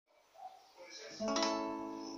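Acoustic guitar: a chord strummed a little over a second in and left ringing, slowly fading.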